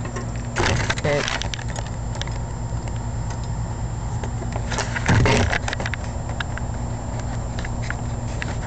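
Metal lock pick working in the small pin-tumbler cylinder of a window sash lock: light metallic ticks and scrapes throughout, with a louder rattle about a second in and again about five seconds in. A steady low hum runs underneath.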